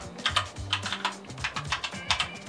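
Computer keyboard typing: a quick, irregular run of key clicks as a short word is typed.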